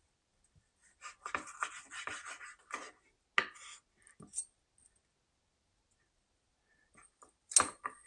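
Knife cutting through a cooked beef rib on a wooden cutting board, with the blade and fork scraping and clicking against the board: a run of short scraping strokes about a second in, then a sharp click a little after three seconds.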